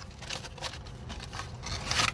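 Cloth baseball cap rubbed and brushed against the phone's microphone while it is handled close up: irregular rustling and scraping.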